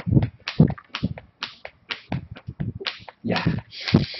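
A sheaf of paper being flapped rapidly back and forth to fan air, making quick swishing strokes about four or five a second.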